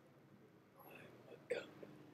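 Mostly quiet room tone, broken about one and a half seconds in by one short, high-pitched vocal sound with a sharp start: a clipped syllable or gulp from the cartoon talking-cup character's voice.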